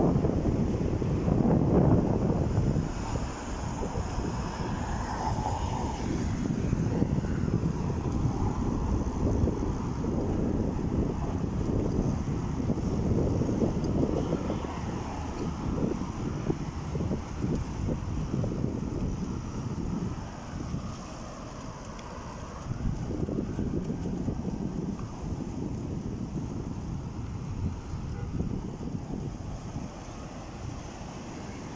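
Wind buffeting a phone microphone while moving along a street, a low rumbling noise that is strongest in the first few seconds and eases off briefly about two-thirds of the way through.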